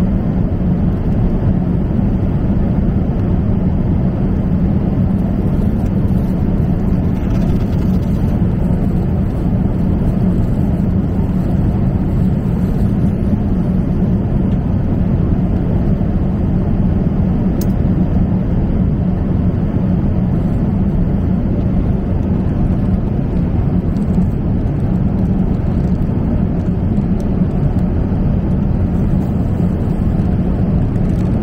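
Steady jet airliner cabin noise at cruise, heard from a seat over the wing: the constant rush of airflow and the engines, with a steady low drone.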